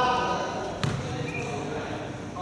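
A basketball bouncing once on the court floor a little under a second in, a sharp thud, in a large echoing sports hall, with men's voices calling out on the court.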